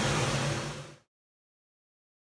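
Steady low machinery hum of a dry-cleaning plant with its garment steam tunnel running, fading out about a second in and giving way to complete silence.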